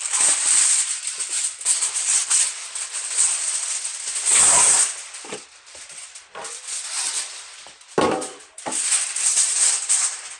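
Reynolds Wrap aluminum foil being pulled off the roll, then crinkled and pressed flat by hand: a busy crackling rustle throughout, with its loudest burst about halfway through and another sharp one later.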